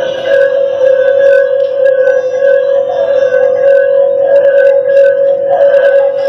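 A slotted granite singing stone rubbed with the palms, giving one loud, steady hum. A higher ringing overtone swells and fades with the hand strokes.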